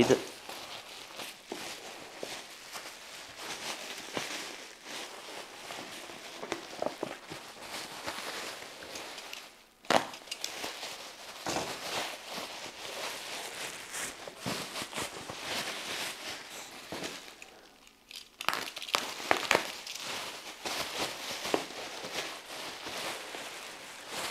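Bubble wrap being handled and pulled open by hand, crinkling and crackling throughout, with a sharp click about ten seconds in and a brief lull shortly before the crinkling picks up again.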